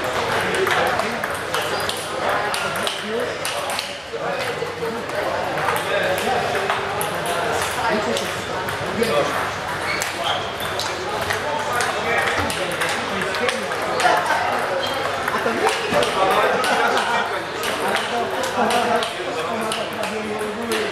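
Table tennis balls being hit with bats and bouncing on tables, a steady run of irregular light clicks from several tables at once, over a background of voices.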